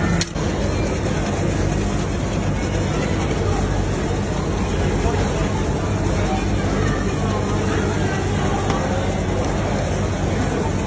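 Busy ambience: a steady low machine hum with background voices.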